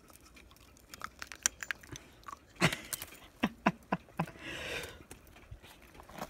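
A dog biting and crunching on an icicle: a run of sharp cracks and crunches of breaking ice starting about a second in and growing louder, then a short rough rustle near the end.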